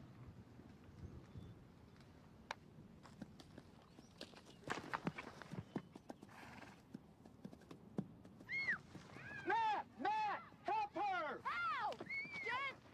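Horse hooves clip-clopping unevenly, then, from about two-thirds of the way in, a horse whinnying in a quick run of rising-and-falling calls: the sound of a horse spooking.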